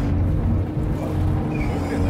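A fishing trawler's engine running with a steady low hum.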